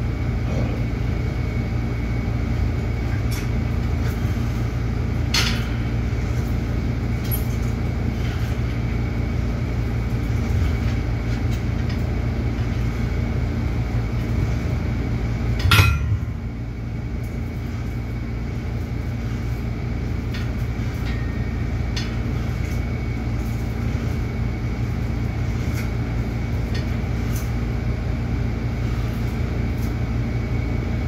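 A steady low mechanical hum fills a small gym room, with a few sharp clicks. The loudest is a metallic clink from a cable weight machine about halfway through.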